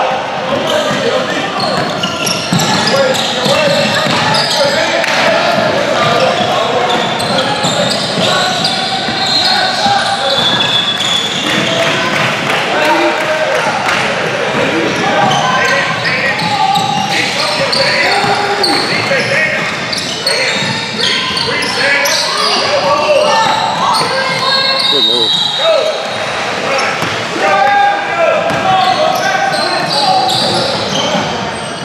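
Basketball game in a gymnasium: steady chatter from spectators, with a basketball bouncing on the hardwood court now and then. The sound echoes in the large hall.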